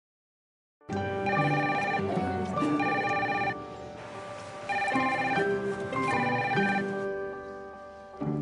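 A telephone ringing: four rings, each under a second long, starting about a second in, with music underneath.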